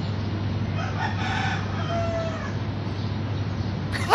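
A rooster crowing faintly about a second in, over a steady low hum and background noise.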